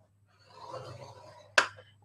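A scoring tool is drawn along a groove of a scoring board, creasing a sheet of patterned cardstock paper: a faint scraping for about a second, then a single sharp click.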